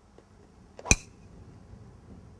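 Golf driver striking a ball off the tee: one sharp, short impact about a second in.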